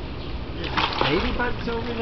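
A short splash of pool water as a toddler is lifted off the edge into a swimming pool, followed by wordless voice sounds.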